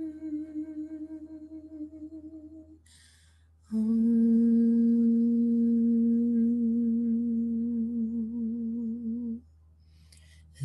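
A woman humming long, sustained meditative notes. A held note fades out over the first three seconds, then there is a breath in, and a lower, louder note is held for about six seconds before stopping.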